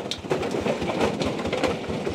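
Dense, irregular clattering of many small hard knocks, the sound of cassava pieces being worked during grinding or drying.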